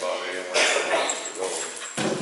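A dog whining, with indistinct talk in the room.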